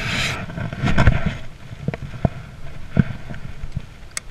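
Handling noise on a body-worn camera's microphone: rustling and brushing against it, with a loud knock about a second in and scattered clicks and knocks after.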